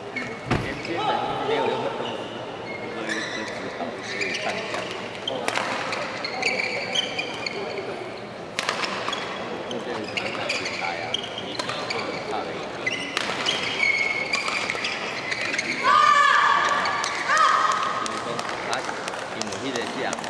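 Badminton doubles rally in a large sports hall: rackets crack against the shuttlecock at irregular intervals and shoes squeal on the court, with voices in the background. The loudest moment is a short run of high squeals about three-quarters of the way through.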